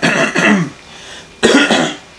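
A man clearing his throat twice: two short, rough bursts about a second and a half apart.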